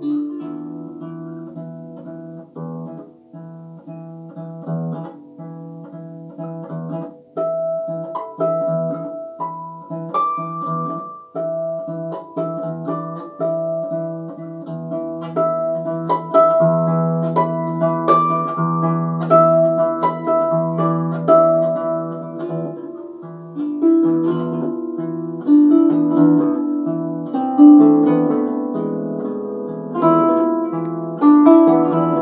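Solo harp played by hand: a plucked melody over ringing low notes, growing gradually louder toward the end.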